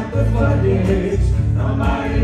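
Church worship team singing a gospel song together in several voices over instrumental accompaniment with a strong bass line.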